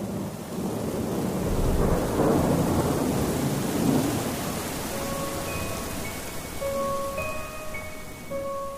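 Rain and thunder: a steady rain hiss with a rumble of thunder that swells about two to four seconds in. From about five seconds in, a slow line of single held chime-like notes plays over it.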